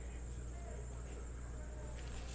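Quiet room tone: a steady low hum with a faint, steady high-pitched whine, and a few faint, indistinct voice-like sounds.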